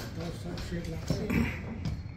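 Indistinct voices with music, no clear non-speech sound.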